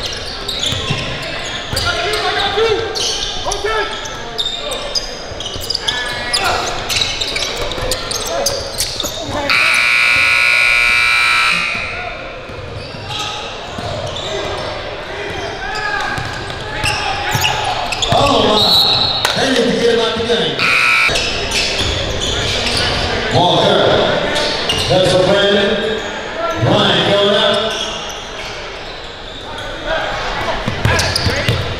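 Basketball bouncing on a hardwood gym floor amid indistinct voices of players and spectators, echoing in a large hall. About ten seconds in, a loud buzzer sounds for about two seconds.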